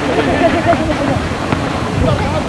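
Indistinct voices of people talking and calling out over a steady rushing background noise.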